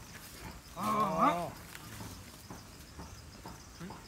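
A yoked plough ox mooing once, a short call about a second in.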